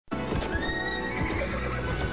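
Background music over a horse galloping and whinnying.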